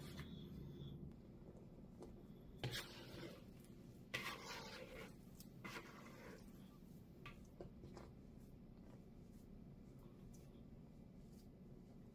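Faint rubbing and soft scuffs of hands kneading and pressing yeast dough on a floured silicone pastry mat, a few short strokes with the clearest about three and four seconds in, over a low room hum.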